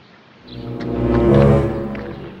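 A low, horn-like sound effect: one sustained note that swells in about half a second in and fades away toward the end.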